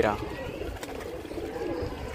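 Domestic pigeons cooing faintly and low.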